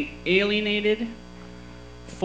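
A man's voice holds one drawn-out sound for under a second through the microphone, and then only a steady electrical mains hum from the sound system remains.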